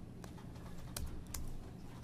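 A few faint, scattered computer keyboard keystrokes as code is edited, single clicks spaced irregularly across the two seconds.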